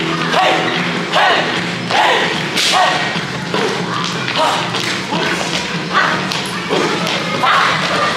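Dance music playing with regular thuds a little more than once a second, dancers' feet stamping on a wooden stage.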